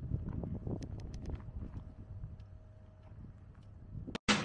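Wind buffeting a clip-on microphone, a low rumble, with a few faint clicks.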